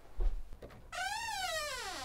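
A door creaking open on its hinges: a soft thump, then about a second in one long squeak that rises briefly and then slides down in pitch.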